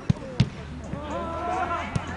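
A football being kicked: two sharp thumps about a third of a second apart just after the start, and a smaller one near the end, with players shouting in between.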